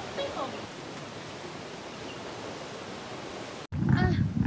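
Steady, even outdoor background rush with no distinct events, and a brief faint voice just after the start. It cuts off abruptly a little before the end.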